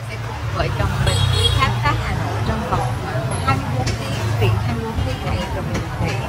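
A woman talking over the steady low rumble of street traffic.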